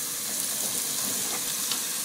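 Chopped onion, garlic and carrot frying in olive oil in a pot: a steady, even sizzle as minced beef is tipped in.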